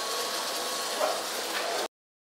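Whipped-cream aerosol can spraying onto a milkshake: a steady hiss that swells briefly about a second in and cuts off suddenly near the end.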